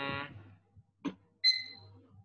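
A hummed 'mm' trails off. About a second in comes a short click, then a brief high-pitched ding that fades within about half a second. A faint low hum runs underneath.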